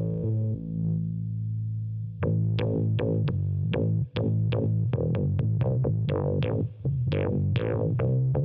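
Electric guitar played through a Subdecay Prometheus 3 dual filter pedal, with the filter driven by an octave-down carrier. One note is held for about two seconds, then a quick run of picked notes follows, each bright at its attack and closing down as it fades.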